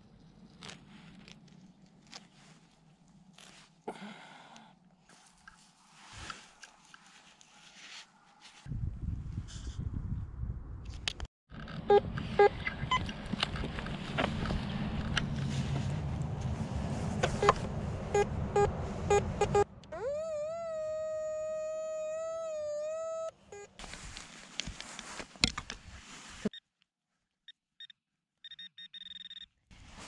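Metal detector sounding a steady, slightly wavering signal tone for about three seconds past the middle, marking a buried metal target. Before it comes a long stretch of loud rustling and scraping with short beeps.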